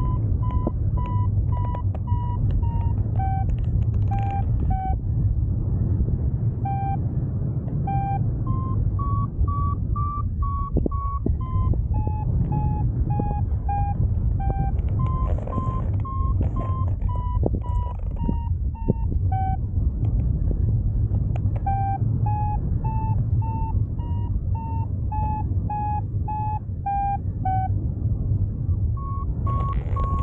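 Paraglider variometer beeping in short pulses, about two a second, its pitch stepping up and down and pausing twice, the sign of the glider climbing in lift. Steady wind rush on the microphone runs underneath.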